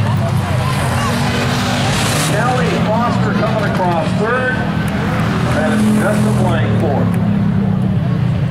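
Hobby stock race car engines running steadily at low speed on a cool-down lap after the checkered flag. Voices call over them through the middle.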